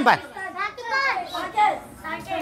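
Boys' voices calling out over one another, eager to answer, with hands raised.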